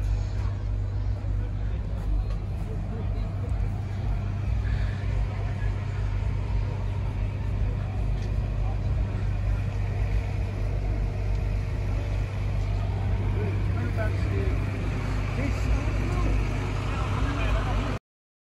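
A steady low engine drone throughout, with people's voices chattering in the background.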